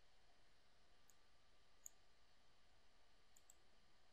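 Faint computer mouse clicks over near-silent room tone: four clicks, the last two in quick succession near the end.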